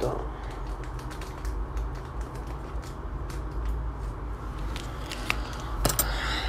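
Light crinkling and small ticks of a candy-kit powder packet being handled and emptied into a plastic tray, a scatter of quick clicks over a steady low hum.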